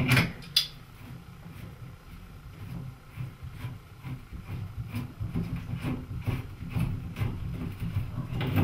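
A shower head being removed from its shower arm: two sharp metal clicks as a wrench works the fitting, about half a second apart near the start, then low rubbing with faint clicks as the threaded connection is unscrewed by hand.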